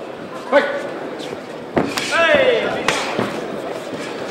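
Kickboxing strikes landing: a few sharp slaps of kicks and gloved punches, bunched near the middle, over short shouts from the crowd and corners.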